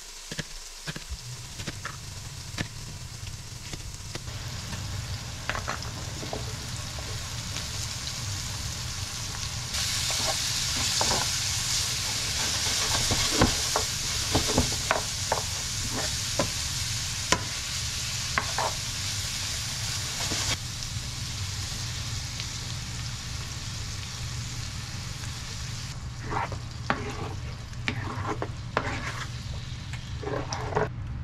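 Chicken pieces and chopped green onions sizzling in a nonstick skillet, with a spoon scraping and knocking against the pan as they are stirred. The sizzle is loudest in the middle stretch and dies down near the end, when the pan is full of sauce.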